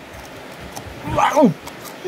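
A short vocal cry that falls steeply in pitch, about a second in, followed by a few faint clicks.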